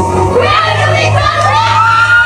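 Women singing karaoke into microphones, holding one long note that climbs in pitch, over a backing track with a steady bass.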